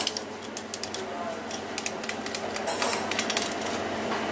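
Knife cutting a skipjack tuna on a plastic cutting board: a run of small clicks and scrapes as the blade works along the fish's bones, in two clusters, over steady background noise.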